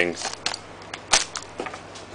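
Trading cards handled by hand: a few sharp clicks and snaps of card stock, the loudest one just past the middle.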